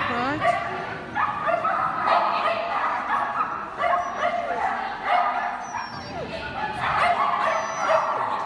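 Dog barking and yipping in short, high calls repeated every second or so.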